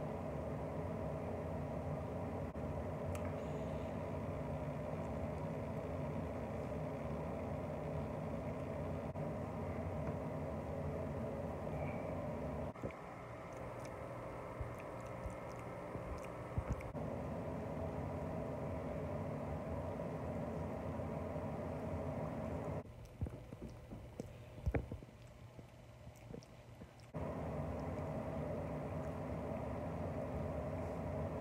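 A steady low mechanical hum made of several fixed tones, like an idling motor or running machine. It drops away for a few seconds near the end, where a couple of sharp clicks sound.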